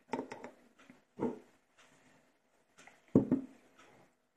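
Short knocks and taps of a wooden stick and glass honey jars on a wooden table while a jar of garlic cloves is topped up with honey, the loudest a double knock about three seconds in.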